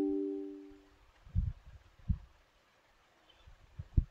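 A short electronic chime of several tones, fading out over the first second, followed by a few soft, dull thumps.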